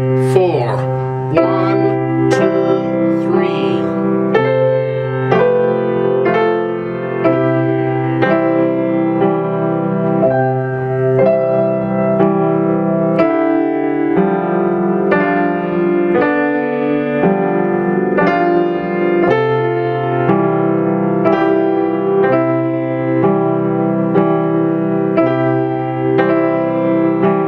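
Acoustic grand piano playing a slow piece in waltz time, notes and chords struck about once a second with the sustain pedal down.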